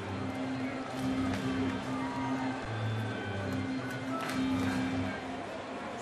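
Ballpark music over the stadium sound system between pitches: a run of short held low notes that stops about five seconds in, over the crowd's murmur.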